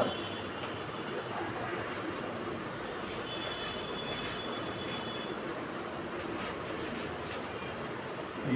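Marker pen writing on a whiteboard: faint squeaks and strokes over a steady background hiss, with a thin squeak about three to five seconds in.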